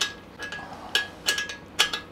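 Small metal parts and a hand tool clinking against the e-bike's front-end hardware. There are about five sharp metallic clicks, bunched in the second half, and a few of them ring briefly.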